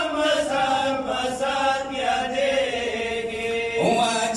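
Pashto noha, a Shia lament, chanted unaccompanied by male reciters into a microphone, in long held melodic lines.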